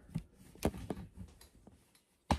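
A handful of faint knocks and clicks from a camera being handled and repositioned.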